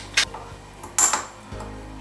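Metal spoon clinking against a small glass bowl: a light tick just after the start, then a sharper clink with a brief ringing about a second in.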